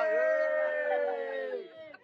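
Several people cheering a long, drawn-out "yay" together, held on one pitch and fading out near the end.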